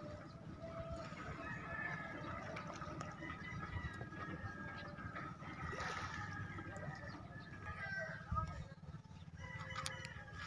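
A rooster crowing over outdoor ambience, with a steady low rumble underneath.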